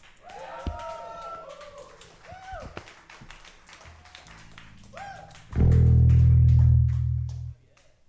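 Electric guitars played loosely through amps between songs: a few quiet bent notes, then a loud low note held for about two seconds that is cut off suddenly.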